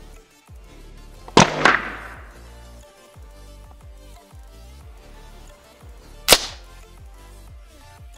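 Scoped air rifle shooting at balloons over background music: a loud double crack about a second and a half in, then a single sharper crack near the end.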